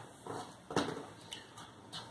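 Faint handling noise: a few soft clicks and knocks as a small plastic LEGO Technic model is put down and another picked up.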